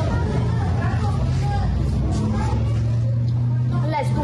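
A steady low engine hum, with faint, indistinct voices over it.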